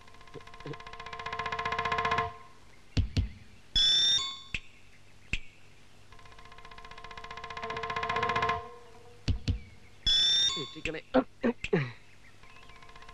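Comic film background score: a rapidly pulsing, many-toned note swells in loudness for about two seconds and cuts off, followed by a few short thumps and a brief high falling squeal; the whole sequence plays twice.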